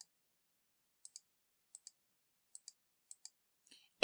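Faint computer mouse clicks, four press-and-release pairs spaced well under a second apart, entering digits on an on-screen calculator keypad.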